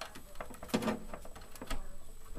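Small clicks and knocks of cable plugs and connectors being handled against the back panel of an AV component, with light rustling between them.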